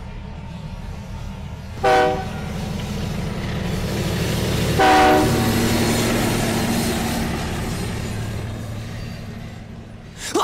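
Freight train rolling past with a steady low rumble of wagons on the rails, its horn sounding two short blasts, about two seconds in and again about five seconds in.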